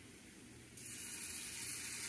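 Pancake batter sizzling as it is spooned into a hot, oiled frying pan. A steady hiss starts just under a second in and holds.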